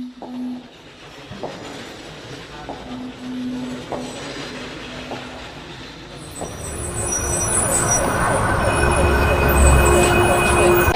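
A rumbling noise with a few scattered clicks, swelling in loudness over the last few seconds, with high squealing tones on top.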